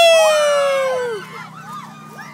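A woman's loud, high-pitched shriek, one long cry whose pitch slowly falls before it stops a little over a second in, with other voices underneath.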